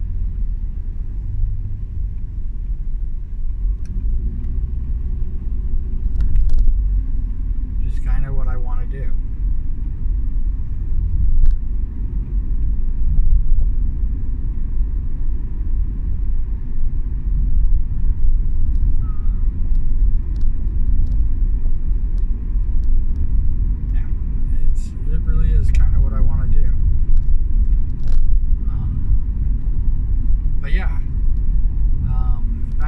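Steady low rumble of a car's engine and road noise heard from inside the cabin while driving. A brief voice-like sound comes about eight seconds in and again near the end.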